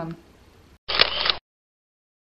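Faint room tone, then about a second in a short sharp click inside a half-second burst of noise that cuts off suddenly, followed by dead silence.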